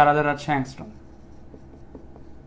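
Marker pen writing on a whiteboard: a few faint, short strokes and taps.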